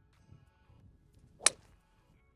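A golf driver striking a ball off the tee: one sharp, short crack about a second and a half in.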